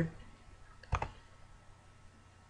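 A single sharp computer mouse click about a second in, over faint room tone.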